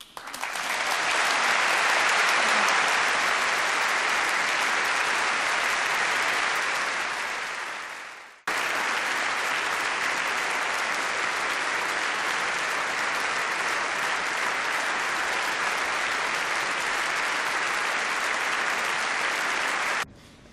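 Large audience applauding. The applause swells within the first second, fades and breaks off about eight seconds in, then comes straight back and holds steady.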